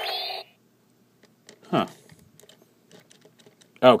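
The end of an electronic sound effect from the Kamen Rider Fourze DX toy belt, cutting off about half a second in. Then it is quiet apart from a few light plastic clicks from handling the toy's switches. The S Magnet switch stays silent because it is switched off.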